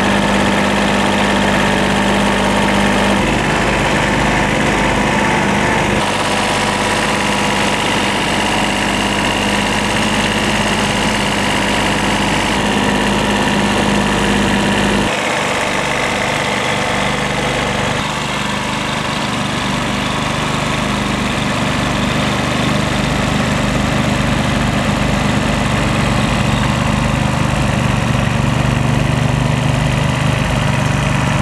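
Kubota compact tractor's diesel engine running steadily at a low, even speed, with a few sudden shifts in tone.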